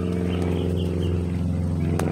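A steady, low engine drone, a motor running without change in pitch.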